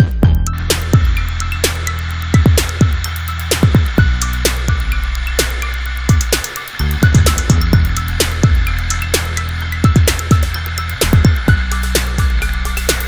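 Electronic dance music with a repeating drum beat and deep bass.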